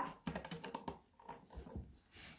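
Plastic Lego bricks clicking and clattering lightly as they are handled and pressed together on a tabletop: a quick run of small clicks, a brief pause about halfway, then a few more.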